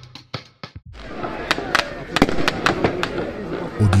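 Pyrotechnics going off at a distance: about a dozen sharp firecracker bangs, irregularly spaced, over a steady background rush, starting about a second in after the last beats of background music.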